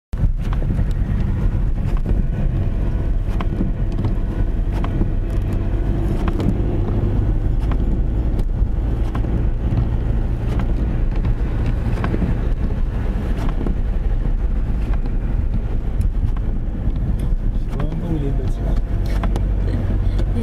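Steady low rumble of a car's engine and tyres on a slushy, snow-covered road, heard from inside the cabin.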